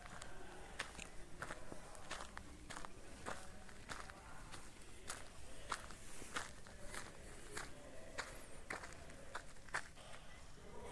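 Footsteps on dry dirt ground, walking at a steady pace of somewhat under two steps a second, faint.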